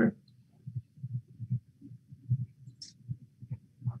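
Faint, irregular low thuds, about two or three a second, with one short hiss about three seconds in: handling and drinking noise as someone takes a drink of water.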